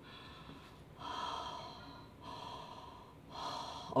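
A woman breathing slowly in and out through her nose, inhaling steam from a bowl of hot water with a scarf wrapped over her face; a longer breath about a second in, then shorter ones.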